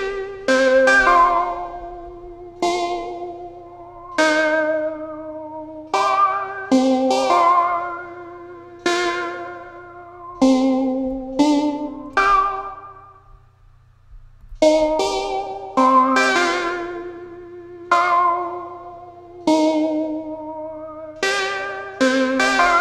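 An Omnisphere software instrument playing a short melody from an FL Studio piano roll: single notes and occasional pairs, each starting sharply and dying away. The phrase breaks off briefly about fourteen seconds in and starts over.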